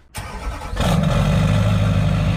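A pickup truck's engine starting and running loud through a large exhaust tip. The level jumps up sharply a little under a second in and then holds steady.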